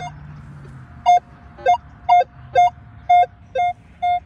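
Metal detector sounding a target tone: a short beep repeating about twice a second as the coil sweeps back and forth over a buried target, starting about a second in. The target gives a signal that is questionable rather than a clean, strong hit.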